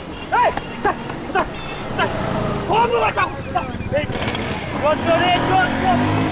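A person's voice calling out in short, high-pitched bursts, ending in a longer held call near the end, over steady street background noise.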